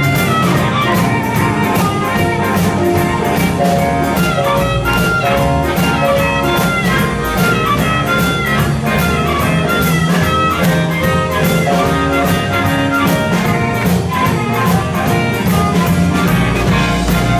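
Live blues band playing an instrumental passage: an amplified harmonica carries the lead melody with bent notes, over electric guitar and a steady drum-kit beat.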